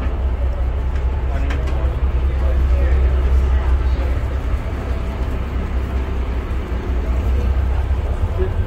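Steady low rumble of a tour boat's engine, heard inside the passenger cabin, with other passengers talking in the background.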